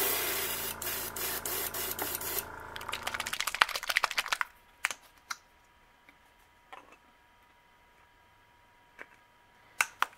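An airbrush blowing air with its compressor humming under it for about two and a half seconds; the hum runs on briefly after the air stops. Then comes a fast run of rattling clicks, followed by a few single clicks.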